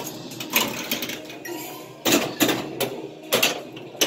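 Star Wars pinball machine in play during multiball: flippers, solenoids and balls clacking and knocking in sharp, irregular hits over the machine's game sounds.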